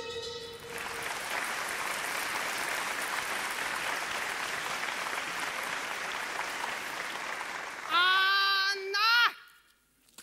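Theatre audience applauding steadily for about seven seconds. Near the end, a voice on stage gives a loud, drawn-out call that slides up and then drops off.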